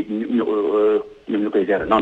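Only speech: a phone-in caller talking over a telephone line, the voice thin and narrowed.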